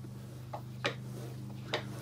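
About three faint, short mechanical clicks over a steady low hum, from handling the lathe spindle and test bar during a dial-indicator roundness check.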